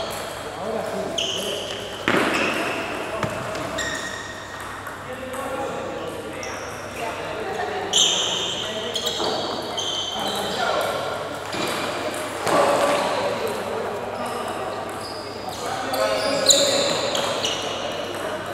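Table tennis rally in a large, echoing hall: the celluloid ball clicks off paddles and the table, with sneakers squeaking on the court floor.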